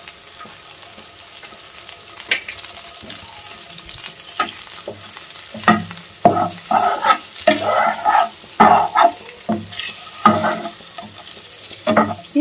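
Hard-boiled eggs frying in a little oil with ground spices in a nonstick pan. The frying is quiet through the first half. From about halfway a spatula stirs and scrapes the pan and rolls the eggs, in a run of irregular scrapes and knocks.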